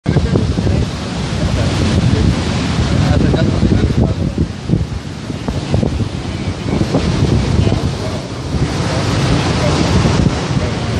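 Wind buffeting the microphone in gusts over the steady wash of beach surf, with indistinct voices underneath.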